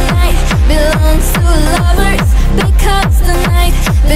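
Bass-boosted electronic dance remix at its instrumental drop: a heavy sub-bass line and punchy kick drums that drop in pitch on each hit, under a bending synth lead melody. There are no vocals.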